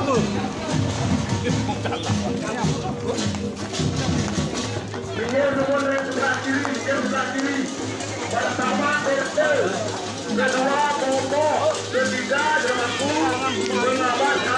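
Balinese gamelan processional music, with the voices of the crowd over it.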